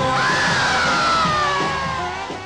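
Live rock band music from a club show with crowd noise, over which one long high note rises quickly just after the start and then slides slowly downward.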